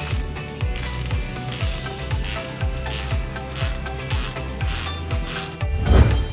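Rapid ratchet clicking of a 17 mm ratcheting combination spanner turning the top nut on a shock absorber piston rod, heard over background music with a steady beat. A sharp metallic clink sounds near the end.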